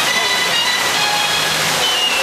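Churning whitewater of a river-rapids raft ride rushing around the boat: a loud, steady hiss.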